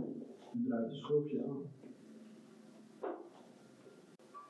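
A voice speaking faintly for about a second, well below the narration level, then near quiet with one brief soft sound near the end.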